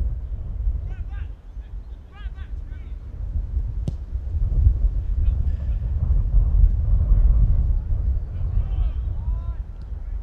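Wind buffeting the camera microphone in a steady low rumble, with players' distant shouts on the pitch early and near the end, and a single sharp knock about four seconds in.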